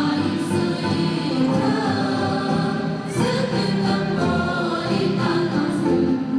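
Choral music: a choir singing sustained, changing notes.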